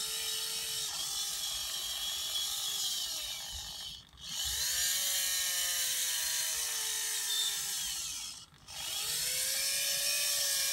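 Servo motor in an InMoov robot's right arm whining through its gears as it drives the arm, in three runs with brief stops about four and eight and a half seconds in. Each run rises in pitch as it starts, then sags slowly.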